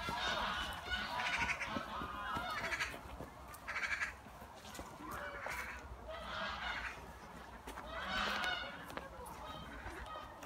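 Geese honking in a string of repeated calls, one every second or so.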